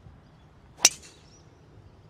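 Ping G425 driver striking a golf ball off the tee: one sharp crack a little under a second in, with a short ring after it.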